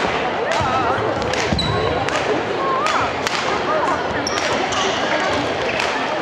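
Badminton rally on a wooden gym floor: several sharp racket strikes on the shuttlecock and brief shoe squeaks, over continuous chatter from spectators.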